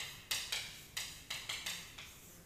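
Chalk writing on a chalkboard: a quick run of sharp tapping strokes, about seven in two seconds, each fading fast into a short scratch.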